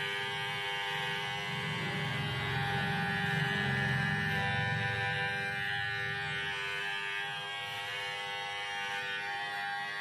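Cordless electric hair clipper running with a steady buzz while it trims beard hair along the jaw and chin.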